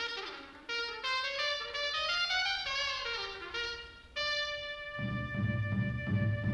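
A trumpet plays a run of quick notes like a bugle call, then holds one long note about four seconds in. A low drum roll comes in near the end.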